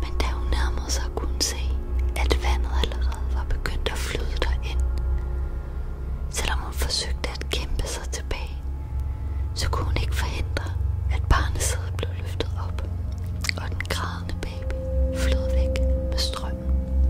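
A whispering voice in breathy bursts over low, droning music with steady held tones. A new sustained tone comes in near the end.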